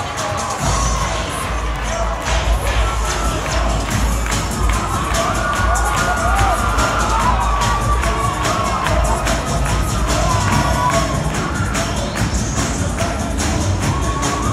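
Cheerleading routine music with a strong bass beat that comes in about half a second in, with a crowd cheering and children shouting over it.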